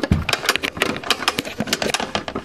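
Rapid, uneven plastic clicking of a Pie Face game's ratchet handle being cranked.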